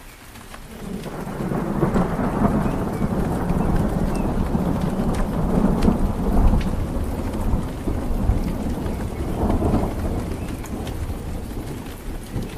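Rain with a long, deep roll of thunder that swells about a second in and rumbles on, rising and falling.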